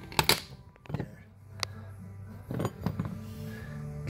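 Small metal pry bar clicking and scraping against a plastic Christmas tree push-pin fastener as it is wiggled out of a rubber floor mat. A handful of sharp clicks, the loudest two close together near the start.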